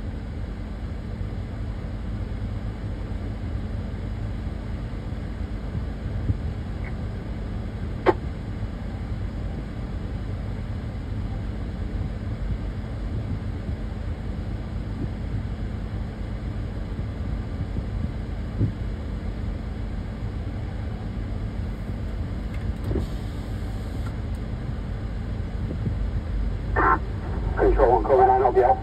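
Steady low rumble with a faint even hum, like an idling vehicle's engine, broken by a single sharp click about eight seconds in.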